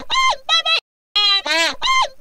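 A singer's vocal heavily pitch-edited in Cubase: a short chopped phrase of about three syllables, its notes held flat and jumping abruptly between high pitches, played twice with a sudden silent gap between the repeats.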